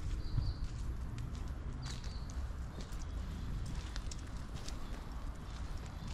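Footsteps on paving: irregular short clicks over a steady low rumble, with a couple of brief high chirps.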